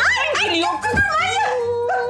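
Women squealing with delight in high, drawn-out voices, with a soft thump about a second in as they tumble onto a sofa.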